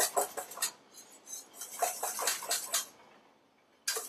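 Wire whisk beating thick sabayon in a stainless steel bowl, the wire rapidly clicking and scraping against the metal in two spells, stopping about three seconds in.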